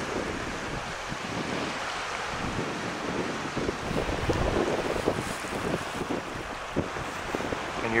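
Wind buffeting the microphone on an exposed seaside clifftop: a steady rush with uneven low rumbles as the gusts rise and fall.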